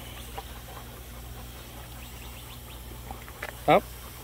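Steady low background rumble with a few faint ticks, then a short loud call of "up" to a dog near the end.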